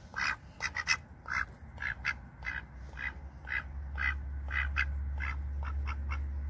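Ducks quacking in a run of short, repeated calls, about two or three a second. A low steady rumble comes in underneath about halfway through.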